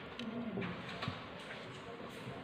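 A dove cooing low, the call falling slightly in pitch in the first half, with a few small clicks from handling paper and a thin metal pin.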